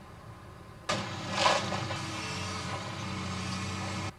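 CAT hydraulic excavator's diesel engine running under load as the machine works. It comes in suddenly about a second in, with a brief louder rush half a second later, runs steadily and cuts off sharply at the end.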